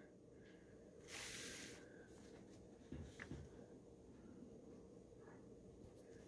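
Near silence: room tone, with a brief faint rustle of a paper manual page being turned about a second in, and a few faint taps a little later.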